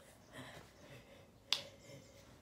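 A single sharp snap about one and a half seconds in, over faint rustling and room noise.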